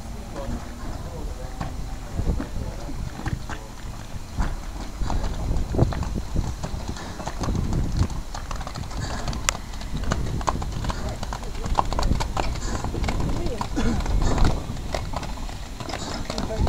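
Irregular sharp knocks and clanks from the replica Puffing Billy steam locomotive, thickest in the second half, with people talking nearby.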